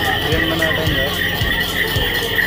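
Traditional Newar drum-and-cymbal music for the Lakhe dance, with a quick, steady drum beat under continuously ringing cymbals, and crowd voices mixed in.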